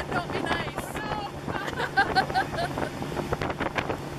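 Motorboat engine running steadily at towing speed, with wind on the microphone and rushing wake water, under people's voices calling out and laughing, with a quick run of short repeated cries about halfway through.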